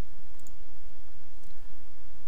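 A couple of faint computer mouse clicks over a steady low background hum, as a tab in a web page is selected.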